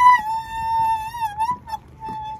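A squeaky wheelbarrow squealing as it is pushed: one long high squeal that wavers slightly in pitch and stops about one and a half seconds in, then starts again near the end.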